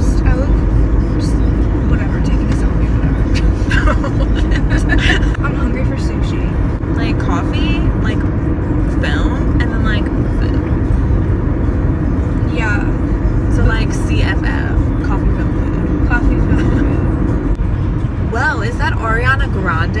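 Steady low rumble of road and engine noise inside a moving car's cabin, with brief snatches of voice now and then.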